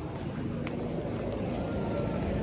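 Outdoor street ambience: a steady low rumble with faint distant voices.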